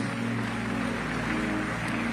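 Soft background music: a steady sustained chord held without change.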